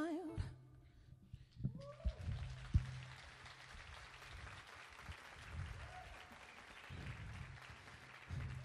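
A sung note ends, and after a short pause an audience applauds lightly and steadily, with a couple of short whoops, at the end of a song.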